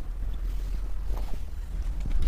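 Cloth rustling as a five-metre length of printed cotton suit fabric is unfolded and spread out, with a few soft rustles a little past the middle, over a steady low rumble.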